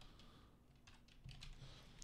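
Faint typing on a computer keyboard: a few scattered keystrokes, mostly in the second half.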